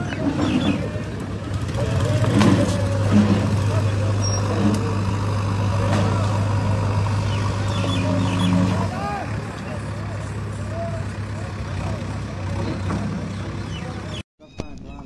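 Voices of people talking at the scene, with a steady low motor hum that starts about two seconds in and stops about nine seconds in.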